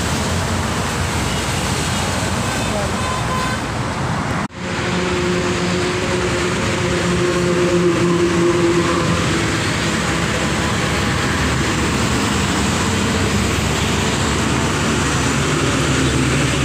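Steady traffic noise from a busy highway: cars and trucks going past, with the sound briefly cutting out about four and a half seconds in.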